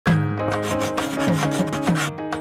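Chalk scratching on a blackboard in a rapid series of short strokes, about five a second, over an intro music jingle with a steady low bass note.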